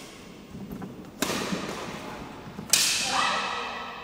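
Badminton racket strings striking a shuttlecock: two sharp smacks about a second and a half apart, the second the louder, each ringing on in the hall's echo.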